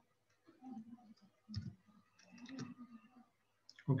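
A few faint clicks from a computer mouse and keyboard, the clearest about a second and a half in.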